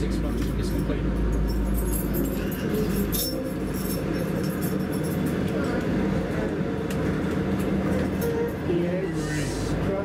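Steady running noise of a moving passenger train heard from inside the carriage, with the diesel engine of an N-class locomotive running on the parallel track just outside. A deep engine hum is strongest in the first two seconds, while the locomotive is level with the window, and then gives way to the rumble of its passing carriages.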